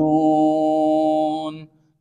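A man's voice in Quranic recitation (tilawat), holding the final syllable of 'majnūn' on one long, steady note that fades out about a second and a half in.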